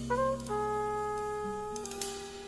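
Acoustic jazz quartet music: a brass horn plays a slow melody of long held notes, stepping down in pitch about half a second in, over low sustained bass notes.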